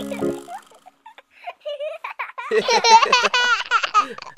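Children's laughter: a short "yeah" and then a run of high-pitched giggles starting about two and a half seconds in, after the last notes of a children's song fade out in the first half second.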